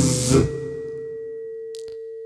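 A single held pure tone in the backing music, slowly fading, with a faint higher tone above it. It carries on alone after the chanting voice stops about half a second in.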